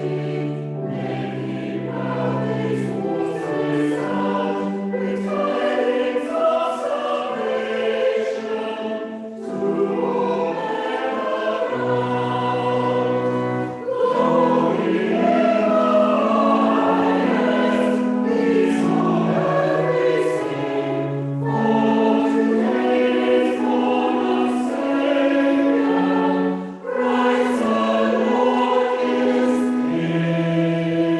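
Church choir singing a carol in held, sustained phrases, with short breath breaks between them.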